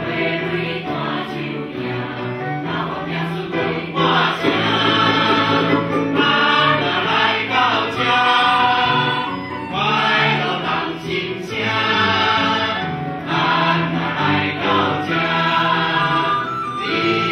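Mixed choir of men and women singing a Taiwanese-style song with a small instrumental ensemble accompanying. The singing swells louder about four seconds in.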